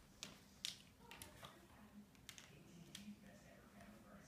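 Near silence: quiet room tone with a few faint, scattered taps and clicks.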